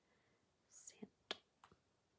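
Near silence, broken by a faint breathy whisper just under a second in, then two small, sharp clicks close together.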